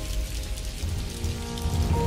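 Soft background music of held, steady notes over an even, rain-like hiss.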